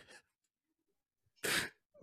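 A man's single short, sharp sobbing breath about one and a half seconds in, after a pause: a voice breaking down in grief mid-sentence.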